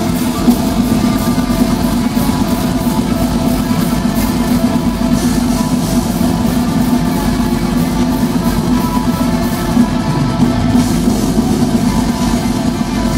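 Metal band playing live through a club PA: distorted electric guitars, bass and a drum kit with fast, dense cymbal hits, loud and continuous. The cymbals thin out briefly about ten seconds in.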